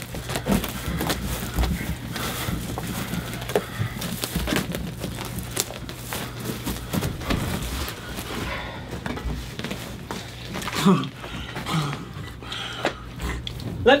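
Rustling and shuffling of an actor on a stage floor strewn with leaves and dirt, with breathing and mouth noises as he drinks face down from a pool, and a short vocal sound about eleven seconds in, over a steady low hum.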